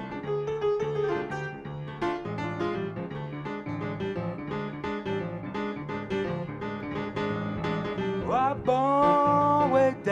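Solo grand piano playing a slow blues introduction in New Orleans style, rolling chords with right-hand runs. About eight seconds in, a man's voice slides up into one long held sung note over the piano.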